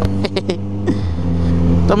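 Motorcycle engine running with its silencer removed, only the bare pipe left, cruising at steady revs; its note shifts about a second in.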